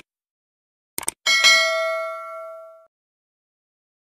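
Two quick mouse-click sound effects, then a single bright bell ding that rings out and fades over about a second and a half: the usual subscribe-button-and-notification-bell cue of a video intro.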